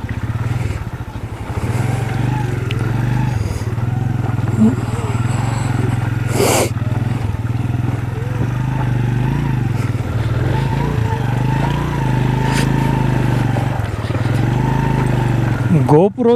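Motorcycle engine running at low, fairly steady revs as the bike is ridden slowly over a stony, wet track, with a short sharp noise about six and a half seconds in.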